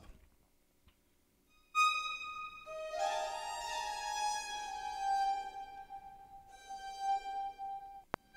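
Sampled chamber-string violins sustaining high notes. The first note enters about two seconds in, and further held notes join below it and ring on together.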